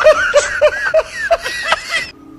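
Laughter: a quick run of short, high-pitched chuckles, about four or five a second, breaking off near the end.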